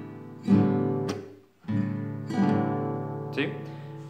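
Classical nylon-string guitar strummed through the full chacarera rasgueo: a fanned finger downstroke, thumb strokes up and down, and a palm-muted stroke. The chords ring between the strokes, and the sound is damped almost to silence once, about a second and a half in.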